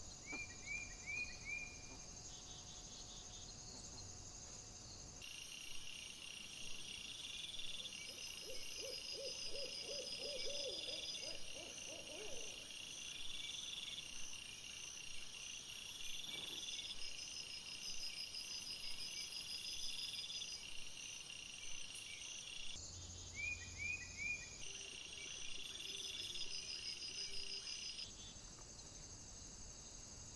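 Insects chirring in a steady, pulsing chorus, with a run of about nine short, low hoot-like calls about a third of the way in and a few short chirps near the start and again near the end.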